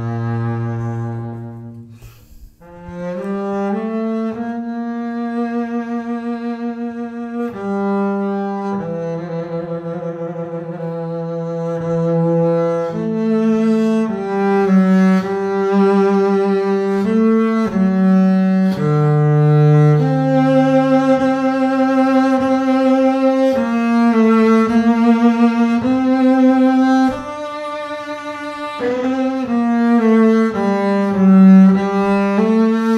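Double bass played with the bow: a slow solo melody of long, sustained notes, some held with vibrato. There is a short break about two seconds in, then the phrase carries on.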